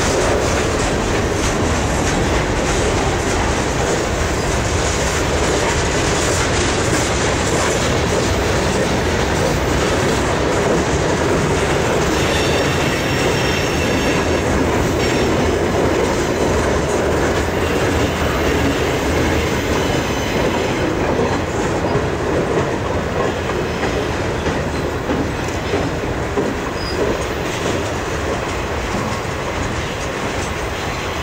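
Freight cars of a long mixed freight train rolling past close by: a steady wheel-on-rail rumble with clickety-clack over the rail joints. A faint high wheel squeal comes in about halfway through.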